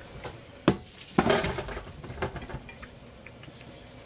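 Boiled potatoes and their cooking water tipped from a steel pot into a stainless-steel colander in a sink: a sharp metal knock under a second in, then water splashing and draining through the colander, tapering off.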